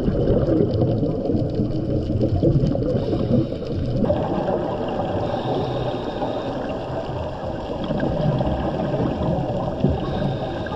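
Underwater noise picked up through a camera housing: a scuba diver's exhaled bubbles rumbling and crackling steadily, the sound turning brighter about four seconds in.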